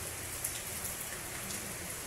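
Rain falling on a corrugated metal roof: a steady hiss with faint scattered ticks of drops.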